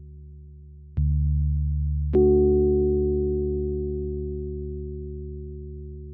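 Ambient soundtrack of deep, sustained tones. A low tone starts suddenly about a second in and a higher one just after two seconds, and each fades slowly.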